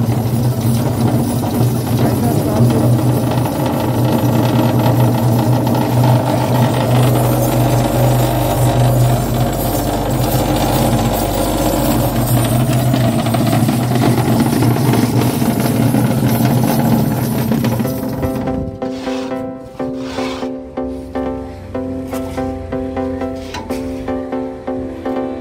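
Electric vibrator motor under a concrete vibrating table running steadily with a loud hum and rattle, shaking a steel mould to compact the freshly poured concrete. It cuts off suddenly about 18 seconds in, and music follows.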